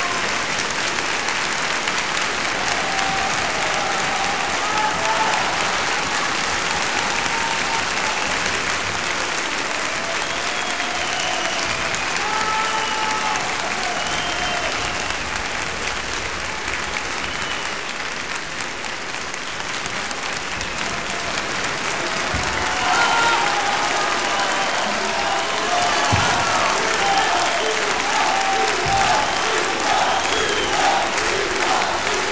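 A live audience applauding steadily at length, with voices and calls from the crowd rising out of the clapping; the clapping swells again in the last third.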